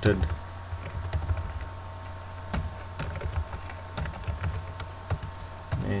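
Typing on a computer keyboard: irregular keystroke clicks, a few louder than the rest, over a steady low hum.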